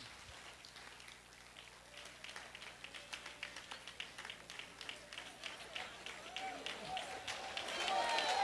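A congregation clapping, faint at first and growing louder and denser from about two seconds in, with faint voices in the hall near the end.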